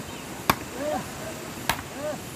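Two sharp chopping strikes of a blade, about a second apart.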